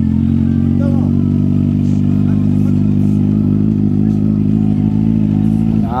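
Kawasaki Z800's inline-four engine running steadily, holding one engine speed with no revving.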